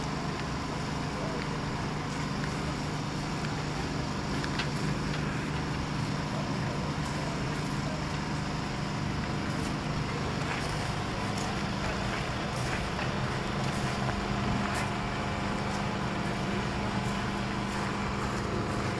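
Steady city background noise: a low rumble of traffic with a faint steady hum underneath.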